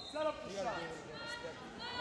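Several voices shouting and calling at once in the background of a gym, none close to the microphone.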